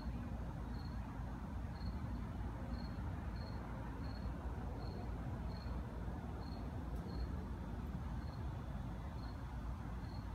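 A cricket chirping steadily, one short high chirp roughly every 0.7 seconds, over a steady low outdoor rumble.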